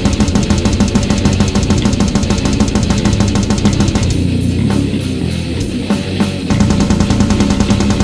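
Death metal band recording: distorted electric guitars, bass and drum kit, with fast, evenly spaced drum strokes. The drumming and the top end thin out briefly in the middle, then the full band comes back in.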